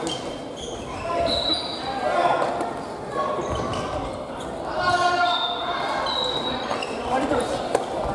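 Family badminton rally in a large gym hall: rackets popping against the shuttle in scattered sharp hits, short high squeaks of sneakers on the wooden floor, and players' voices echoing around the hall.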